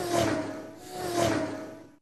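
Two whooshing swells about a second apart, each with a steady tone that sags slightly in pitch, cutting off abruptly at the end: a logo ident sound effect.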